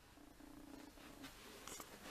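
Near silence: quiet room tone with a faint, broken low hum and a couple of faint ticks near the end.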